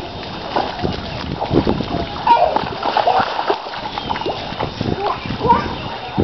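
Water splashing and sloshing in a shallow muddy puddle as a child slides and crawls through it on hands and knees, in a run of irregular splashes.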